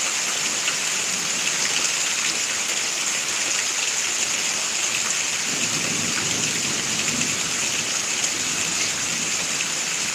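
Steady rain falling during a thunderstorm, with faint drop ticks close by. A low rumble of thunder builds about five and a half seconds in and dies away about three seconds later.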